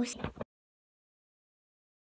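A girl's voice finishing a word, then dead silence with no sound at all for the rest of the time.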